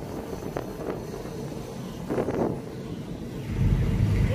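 Wind rumbling on the microphone over faint, steady background vehicle noise, with a brief faint sound about two seconds in.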